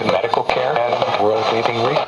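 A talk broadcast on the AM band playing through the speaker of a Sony TFM-1000W portable radio: a voice speaking over a steady hiss of static.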